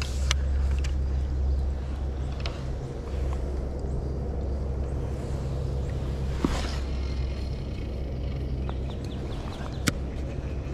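A steady low rumble, with a few sharp clicks and knocks from fishing gear being handled, the loudest just before the end.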